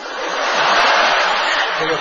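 A loud rushing hiss lasting nearly two seconds, swelling in and then fading: a comic sound effect for a toaster shooting out toast at great speed.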